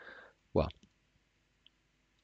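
A soft breath and the single spoken word 'well', then near silence broken by one faint click about one and a half seconds in.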